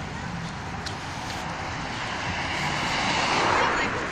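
A car passing along the street, its tyre and engine noise swelling to a peak near the end and then falling away, over steady traffic noise.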